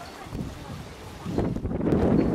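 Wind buffeting the microphone, an uneven low rumble that grows louder about one and a half seconds in.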